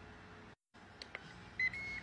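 Ninja Foodi multi-cooker's control panel: two button clicks about a second in, then electronic beeps as the cooking program is set, a short beep followed by a held one near the end.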